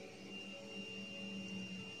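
Faint soft background music: a few quiet sustained tones held steadily, with no other event.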